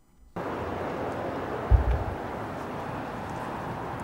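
Steady, even background noise that starts suddenly, with a short, deep thump just under two seconds in.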